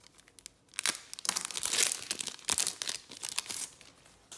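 A trading-card pack's wrapper being torn open and crinkled by gloved hands: a run of crackling from about a second in until near the end.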